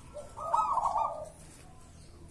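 Zebra dove (perkutut) cooing: one short phrase of quick, rolling coo notes starting about half a second in.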